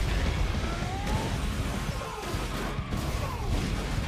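A dense action sound-effects mix: heavy rumble and crashes, with short gliding squeals rising and falling through it.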